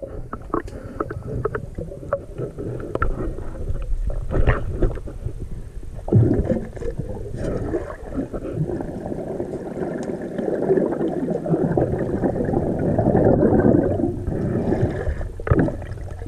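Underwater sound of a diver's breathing through a regulator, heard through the camera housing: scattered clicks and knocks at first, then long rushing, gurgling stretches of exhaled bubbles from about six seconds in.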